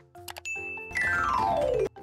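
Editing sound effect: a ding, then a quick downward-sliding run of chime-like tones that cuts off suddenly near the end.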